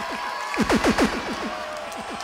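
Quick bursts of falling-pitch sweeps from the DJ's turntables, about five in half a second, over steady crowd noise.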